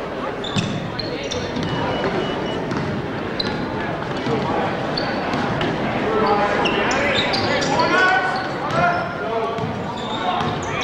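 Basketball game in a gymnasium: a crowd of spectators talking and calling out, with a basketball bouncing on the hardwood court and short high squeaks. The crowd voices grow louder from about six seconds in.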